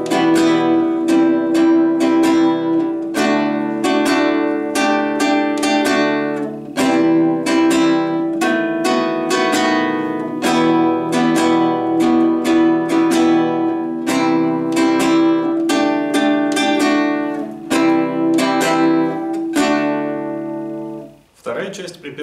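Nylon-string acoustic-electric guitar strummed in a syncopated down-up rhythm, running through a minor-key chord progression of Em, C, D, Dsus4 and B7. The strumming stops about a second before the end.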